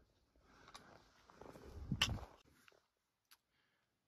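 Faint footsteps on loose talus rock, with one sharp crunch or clink of stone about two seconds in, followed by a few small ticks. The sound then cuts out.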